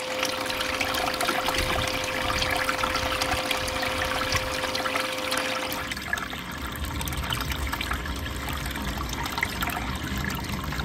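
Water running steadily down a small gold-prospecting sluice box and pouring off its end into a tub, with a faint steady hum in the first six seconds; the sound shifts about six seconds in.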